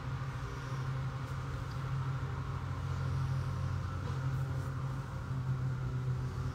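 A steady low motor hum with several steady tones, unchanging throughout.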